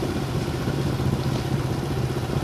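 Small motorbike engine running steadily at low speed, a low even drone with no change in pitch.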